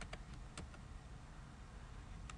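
A few keystrokes on a computer keyboard in the first second, then a faint steady background hum.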